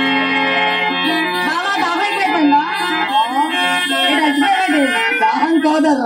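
Live stage music: a long held note for about the first second, then a voice singing a wavering, gliding melody over a hand drum.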